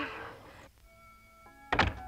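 A baby's crying dies away at the start. Soft held notes of film music then come in, and a single heavy thump with a short ring lands near the end.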